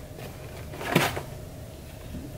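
A cardboard shoebox handled and turned in the hands, giving one brief knock or scrape about a second in over quiet room tone.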